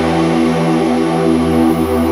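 Ambient electronic music: a sustained synthesizer pad chord holding steady with no drums or beat. Near the end, a thin high tone begins sliding down in pitch.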